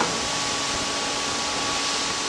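Chopped celery and onion sizzling gently in butter in a frying pan on a portable induction cooktop, a steady hiss with a faint thin whine under it.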